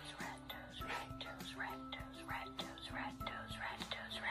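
A person whispering over soft music that holds sustained low notes.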